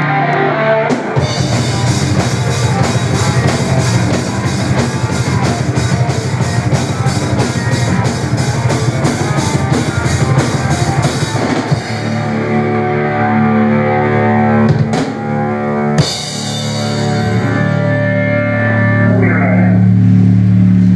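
Power metal band playing a rehearsal: distorted electric guitar, bass guitar and drum kit. A fast passage with rapid, steady drumming runs through the first half. About halfway through the band switches to long held, ringing chords, with a couple of sharp cymbal hits near the end.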